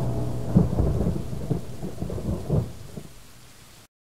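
Thunderstorm sound effect: low thunder rumbling in several swells over rain, fading away until it cuts off just before the end.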